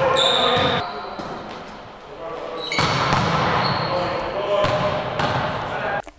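Indoor volleyball practice: balls being struck and bouncing on the court, with short high squeaks and players' voices, all echoing in a large sports hall. It goes quieter briefly about a second in, then picks up again.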